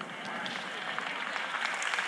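Audience applauding, building slightly.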